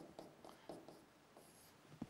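Faint taps and scratches of a pen writing on a board: a few short, soft strokes in near silence.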